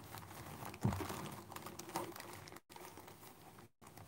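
Faint light clicking and tapping with some rustle, and a soft thump about a second in; the sound cuts out completely twice, briefly, near the end.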